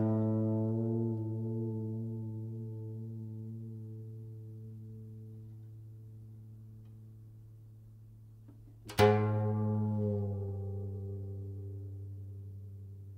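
Guzheng-style plucked zither in AI-generated music: a low chord left to ring and fade slowly for several seconds, then a second low chord struck about nine seconds in and left to die away.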